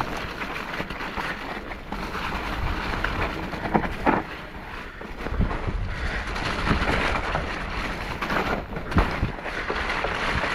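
Mountain bike riding down a muddy woodland trail over wet leaf litter: a steady rush of wind on the microphone and tyre noise, broken by several sharp knocks from the bike jolting over bumps.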